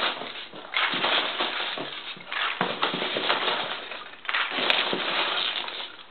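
Polystyrene packing peanuts rustling as hands scoop them out of a cardboard box and let them spill onto a wooden floor, in a few bursts of a second or two each.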